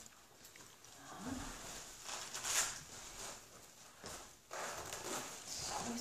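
Small dog sniffing and nosing at treats held in a person's hands, with short bursts of rustling and movement.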